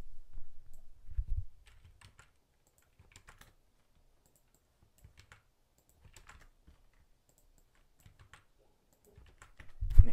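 Computer keyboard typing, faint and sparse, in short clusters of keystrokes with pauses between. A low muffled rustle in the first second and a half is the loudest part.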